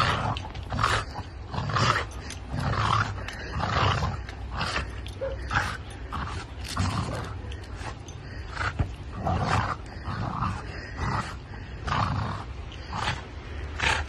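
A dog growling in repeated rough bursts, about one a second, with a snow shovel's handle gripped in its mouth.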